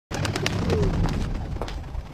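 A bird cooing once, over a low rumble, with a few sharp clicks.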